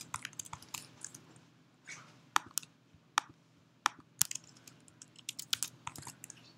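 Typing on a computer keyboard: scattered, irregular keystrokes with short pauses between them, a quick cluster near the end.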